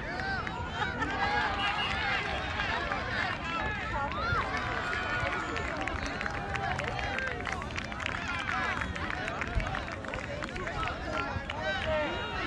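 Several voices from players and spectators at a children's soccer game, calling and chatting at once, overlapping without clear words, over a low rumble.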